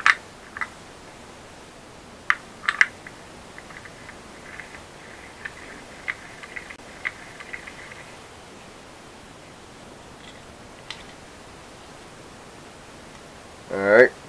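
Hands fitting a sump pump's impeller into its housing: a few sharp clicks of parts knocking together, then a run of small faint ticks and taps for several seconds, and one more click later on.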